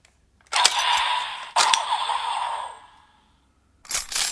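DX Assault Grip type01 transformation toy set off twice, about a second apart. Each time a sharp plastic click is followed by an electronic blast-like sound effect from its speaker that fades away. A short burst of sound comes near the end.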